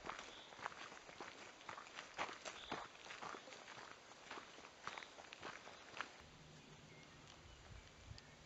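Faint footsteps of a walker on a dirt forest track, about two steps a second. They stop about six seconds in and give way to a faint steady low hum.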